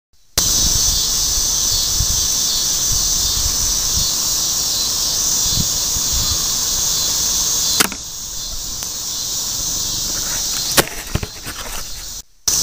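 Steady high-pitched chorus of summer insects, with low rumble from camera handling underneath. A sharp click comes about eight seconds in, after which the sound drops a little, and a few more clicks come near the end.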